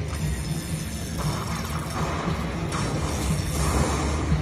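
Tiki Fire Lightning Link slot machine playing its win celebration music while the bonus win total counts up, over a steady low hum.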